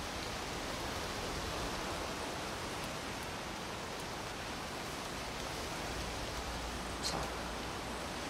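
Steady, even outdoor background hiss with no distinct events in it.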